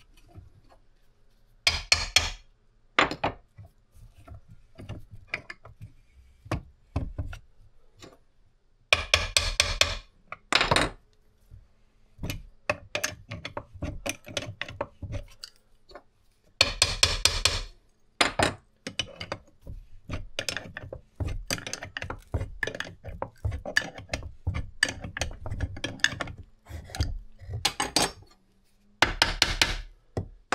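A wrench clicks on the nut of a crankshaft puller tool as it draws the aluminium engine case halves together, with a hammer tapping on the case in between. The taps help the countershaft through its bearing, where it is a little tight. The sound comes in short runs of rapid clicks, with single knocks in between.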